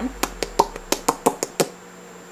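A quick run of about eight small, sharp clicks over a second and a half: liquid lipstick being patted and pressed into the lips, so that only a thin layer of the colour is left.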